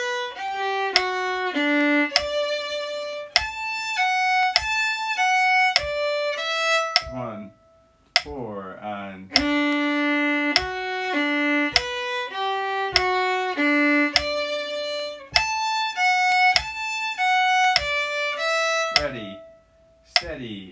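Violin played slowly in even, separate bowed notes, running through the same short phrase twice with a brief pause between. A light regular click sounds under it, in keeping with a metronome set to 50.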